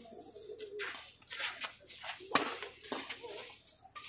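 Badminton rackets hitting the shuttlecock during a doubles rally, the loudest a sharp smack a little past the middle, with a few lighter clicks around it.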